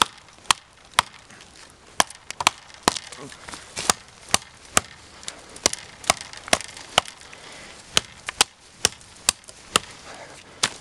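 Fallkniven A2 survival knife chopping into a dead tree trunk to cut a notch: a run of sharp wooden strikes, about two a second with brief pauses between bursts.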